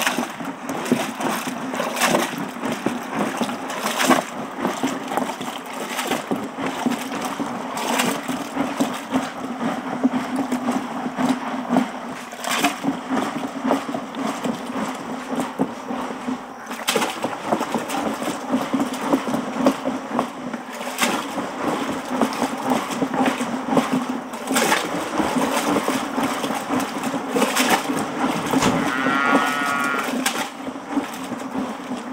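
A wooden plunger churning milk by hand in a tall plastic churn to make butter: continuous sloshing strokes with a sharper knock every few seconds, over a steady low drone.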